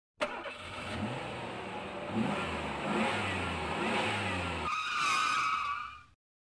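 A vehicle engine accelerating, its pitch rising again and again like gear changes. A higher wavering tone takes over near the end, then the sound cuts off.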